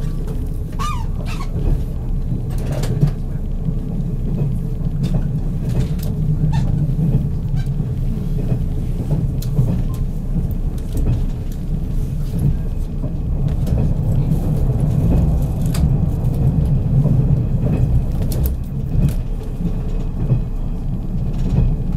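Running noise heard inside a JR 183-series electric multiple-unit train: a steady low rumble of wheels on rail, with scattered sharp clicks and a brief squeak about a second in.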